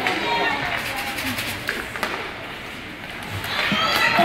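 Indistinct talking from people in the stands of an ice rink, with a few faint knocks about halfway through; the talking drops away briefly before picking up again near the end.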